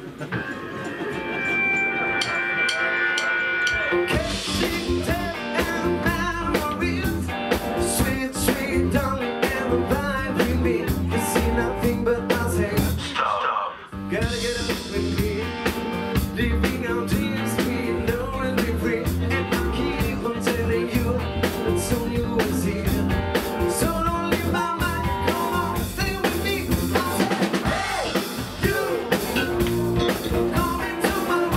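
Live rock/blues band playing on electric guitar, electric bass, drum kit and keyboard. It opens with a few held keyboard-like tones, and the full band comes in about four seconds in. There is a short break near the middle before the song drives on.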